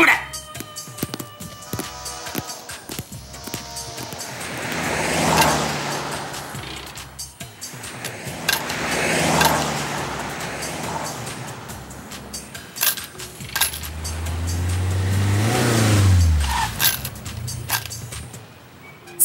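Cartoon street-traffic sound effects: cars passing one after another, each a whoosh that swells and fades, three times. Near the end a car's engine tone rises and then drops away as it pulls up.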